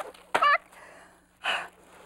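A woman's short wordless vocal sound, then a breathy gasp about a second and a half in, over faint rustling of paper envelopes being leafed through.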